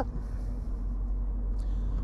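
Smart ForTwo Cabrio driving slowly with its roof open: a steady low engine and road rumble.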